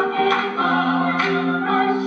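A stage ensemble of men's and women's voices singing a song together in held harmony, changing chords every half second or so, with sharp percussive hits on the beat.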